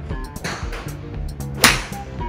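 A golf club swishes through the air, then strikes a ball with one sharp crack near the end, over background music with guitar.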